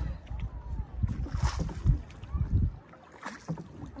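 Wind buffeting the microphone on an open boat moving across a lake, a gusty low rumble that eases off about three seconds in.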